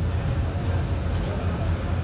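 Outdoor urban background noise: a steady low rumble with a faint haze above it and no distinct events.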